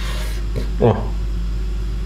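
A knife slicing through a rolled lavash roll and scraping on a wooden cutting board: one short rasping cut near the start, over a steady low hum.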